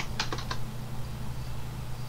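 Computer keyboard keys tapped in a quick run of about five strokes in the first half second, then stopping. A steady low hum lies underneath.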